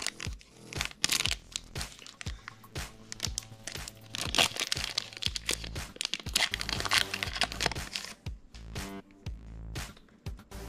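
A foil trading-card booster pack crinkling and tearing open by hand, in bursts of crackling, with background music underneath.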